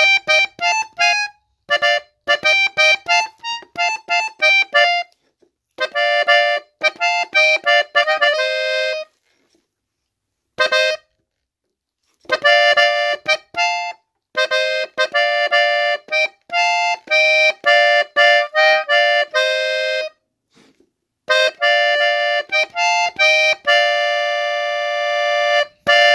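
Button accordion in F, master register, playing a corrido melody in B-flat on the treble buttons. It plays phrases of quick notes and held notes, with no bass heard, and stops briefly between phrases, most clearly for a few seconds about nine seconds in.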